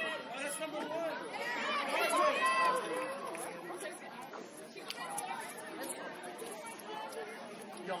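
Several people calling out and chattering at once, overlapping high voices with no clear words. Loudest about two seconds in, thinning out in the second half.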